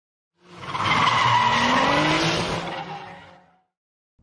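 A drifting car: tyres squealing over a running engine whose note rises slightly. It fades in about half a second in and dies away well before the end.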